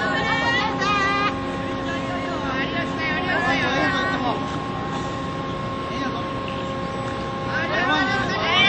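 Young players' high voices calling out across a baseball field in long, drawn-out shouts: a burst at the start, another around three to four seconds in, and a third near the end. Under them runs a steady mechanical hum made of several fixed tones.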